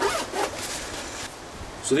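Zipper on a soft fabric bag being pulled, a quick zip run lasting a little over a second.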